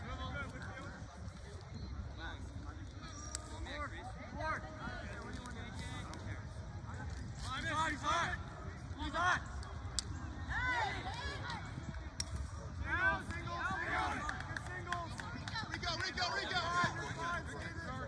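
Scattered shouts and calls from players, coaches and spectators across an outdoor lacrosse field, without clear words, louder in bursts around the middle and later on. A few sharp clicks sound about halfway through.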